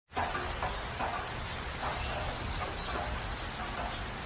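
Nature-ambience sound effect: a steady outdoor hiss with faint birds chirping, cutting in abruptly at the start.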